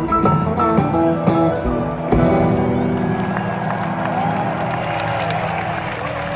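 Live country-rock band ending a song: guitar notes over the band, a final hit about two seconds in, then the last chord ringing out as an arena crowd starts cheering and applauding.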